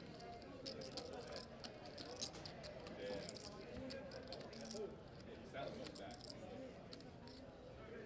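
Faint murmur of voices at a poker table, with many scattered light clicks of chips and cards being handled.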